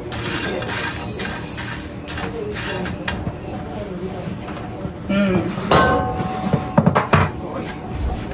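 Low, indistinct talking with a few short clicks and knocks of kitchen dishes.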